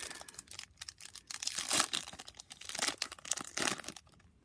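Foil wrapper of a Topps F1 trading-card pack being torn open and crinkled by hand: a string of irregular crackling rips, loudest about halfway through and again near the end.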